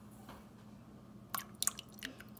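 Sugar pouring into a pan of coconut milk with a faint hiss, then a few sharp drips and splashes into the liquid, the two loudest about a second and a half in.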